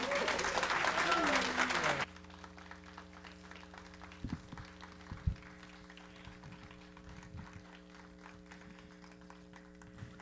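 Audience applauding for about two seconds, then cut off suddenly. After that only a quiet steady hum remains, with a couple of soft knocks.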